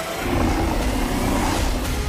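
Movie-trailer sound mix: a car engine accelerating as a sound effect, blended into the trailer's score.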